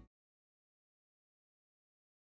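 Silence: the last trace of the song's music dies out right at the start, leaving dead digital silence.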